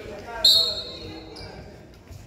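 A loud, high-pitched sneaker squeak on the hardwood basketball court about half a second in, fading over about a second, under faint chatter in the gym.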